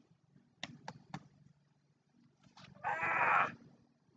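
A man's loud, strained yell of effort, about half a second long, as he throws a football. About a second earlier come three quick sharp taps.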